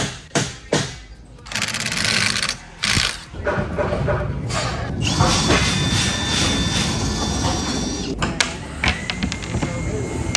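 Cordless drill running for about three seconds with a steady high whine, stopping abruptly.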